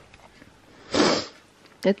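A person taking one short, loud sniff about a second in, smelling a scented gift.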